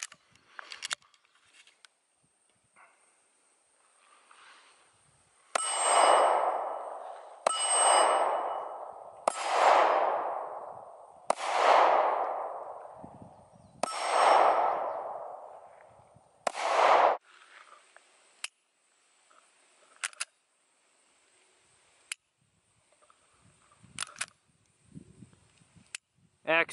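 A pistol slide is racked with a couple of clicks, then six pistol shots about two seconds apart. Each shot is followed by a ringing clang that fades over about a second and a half, the sound of hits on steel targets. A few light clicks follow the string.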